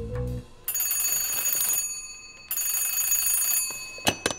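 Old black rotary desk telephone's bell ringing twice: two bright, jangling rings of about a second each, with a short pause between them.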